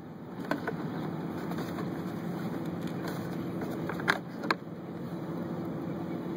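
Steady low mechanical hum, with a few light plastic clicks as the glovebox is handled and lowered: one about half a second in and two close together around four seconds in.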